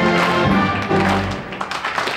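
Live soul band music: the closing bars of the song, held chords over bass and drum hits, dying away about a second and a half in.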